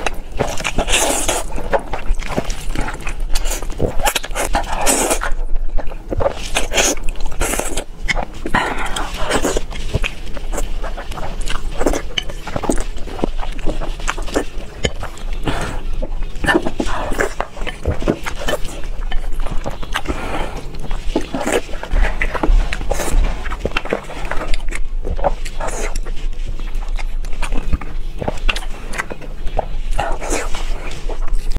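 Close-miked eating sounds: spicy instant noodles slurped and chewed, with wet mouth smacks and bites into boiled eggs, many short irregular sounds in quick succession.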